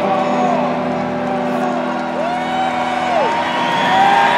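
Live arena rock concert as a song ends: a sustained chord holds under audience cheers and whoops that rise and fall in pitch.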